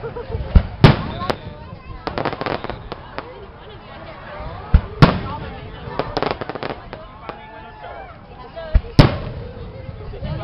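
Aerial firework shells bursting overhead. Sharp bangs come in pairs about every four seconds, with rapid crackling pops between them.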